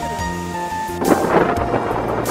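Background music, joined about a second in by strong sea wind buffeting the microphone with a loud, rushing rumble.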